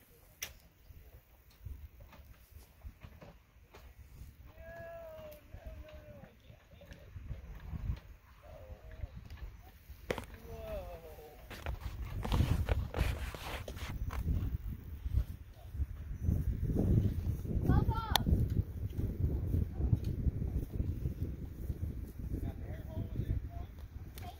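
Low, gusty wind rumble on the microphone outdoors, growing louder about halfway through, with a few sharp clicks and brief faint voices in the distance.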